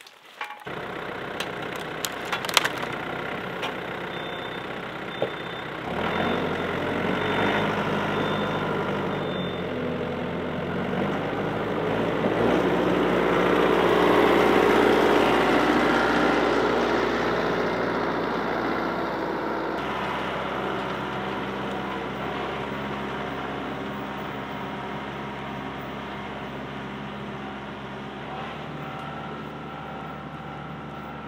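Tractor engine running while it pulls a Rhino rotary cutter (brush hog) through brush and grass. It grows louder to a peak about halfway through, then fades as it moves away. There are a few sharp snaps in the first seconds.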